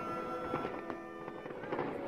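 Aerial fireworks shells bursting, a few sharp bangs and crackles spread across the moment, over steady music.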